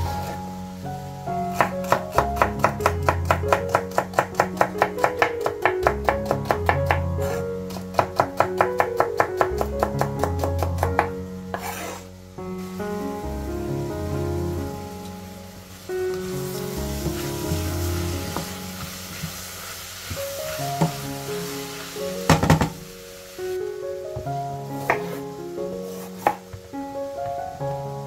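Chef's knife chopping celery fast on a bamboo cutting board, about six strokes a second in two runs over the first ten seconds or so. Later, chopped vegetables sizzle as they fry in a pot, with one loud knock, and a few slower knife cuts come near the end.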